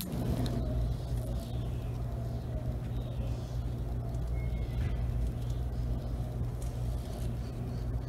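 A steady low mechanical rumble, like a motor vehicle engine running nearby, holding at an even level throughout.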